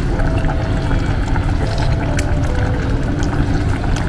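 Saucepan of vegetable broth simmering on an electric stove, a steady bubbling hiss, with faint soft music underneath.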